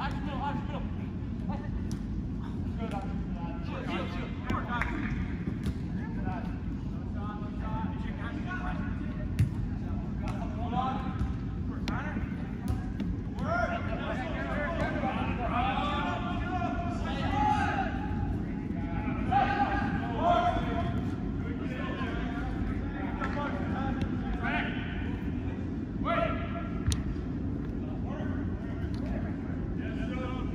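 Players shouting and calling to each other across an indoor turf soccer field, echoing in the hall, over a steady low background rumble. Now and then a sharp thud of the ball being kicked; the calls are busiest in the middle stretch.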